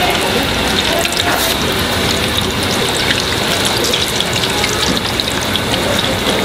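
Filled pancakes deep-frying in a wide pan of hot oil: a steady sizzle peppered with fine crackles.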